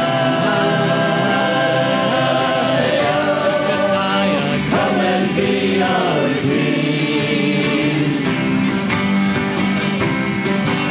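Church choir singing a gospel-style worship song with a band of piano, guitars and drums.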